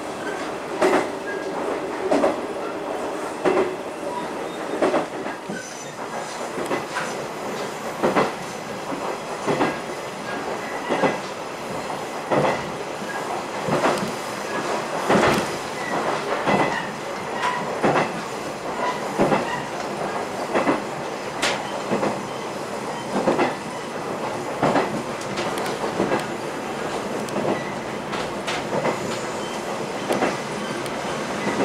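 Diesel railcar running along jointed track, heard inside the cabin: a steady rolling rumble, with a wheel click-clack over the rail joints about every second and a quarter.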